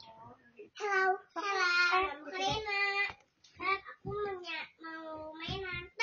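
A young girl singing in short phrases with some held notes and brief pauses between them.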